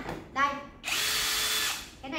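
Hukan cordless drill run free in the air for about a second at steady speed, starting a little under halfway in and stopping abruptly when the trigger is released.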